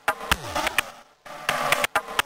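Minimal techno track: a looping pattern of sharp electronic clicks over a buzzing synth texture, with a low sweep falling in pitch just after the start and a brief drop-out a little after a second in.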